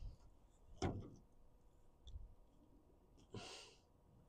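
Quiet handling noises while the camera is moved to a new angle: one faint click about a second in, then a short breathy hiss near the end.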